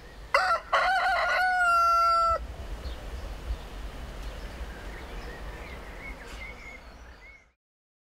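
A rooster crowing once: a few short broken notes, then a long held note that stops about two and a half seconds in. Faint bird chirps follow.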